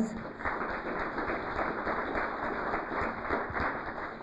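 Audience applauding: many hands clapping in a steady patter that tapers off near the end.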